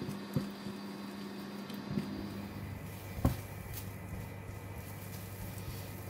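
Silicone spatula stirring and breaking up an egg in a nonstick wok, with a few soft taps against the pan, the sharpest about three seconds in, over a low steady hum.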